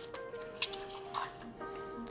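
Soft background music with sustained notes, with a few light clicks from a small cardboard box being handled and opened.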